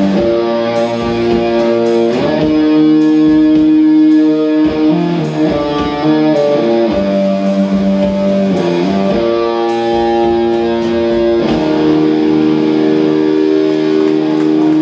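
Live rock band playing instrumentally: an electric guitar holds chords that change every two to three seconds, over drums with cymbals.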